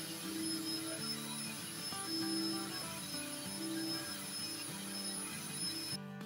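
Electric hand mixer running steadily with a thin high whine, its beaters whipping egg whites in a plastic bowl toward stiff peaks, not yet firm.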